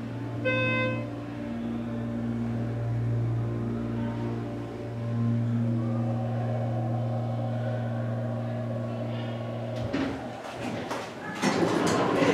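Hydraulic glass elevator car travelling between floors, its drive giving a steady low hum that stops about ten seconds in as the car arrives. The doors then slide open, with clicks and mall noise. A brief electronic beep sounds near the start.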